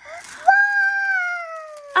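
A young child's long, high-pitched squeal of delight, held for about a second and a half and sliding slowly down in pitch.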